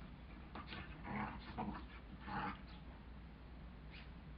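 Two border collies play-fighting, making short dog vocal sounds in several quick bursts during the first two and a half seconds.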